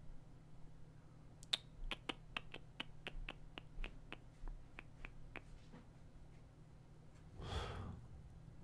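A run of about fifteen faint, sharp clicks, a few per second, from the computer the host is working at, then a short soft rush of noise near the end.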